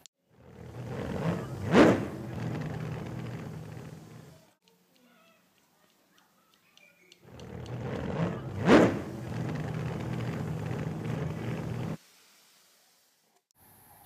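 A car driving past, heard twice as a dubbed-in sound effect. Each pass swells up to a sharp peak about a second and a half in, then runs on with a steady engine hum. The first fades away and the second cuts off suddenly, with a few seconds of silence between them.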